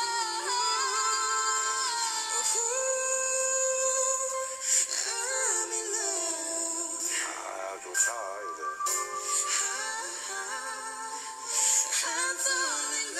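A duet song: a man's and a woman's voices singing with backing music.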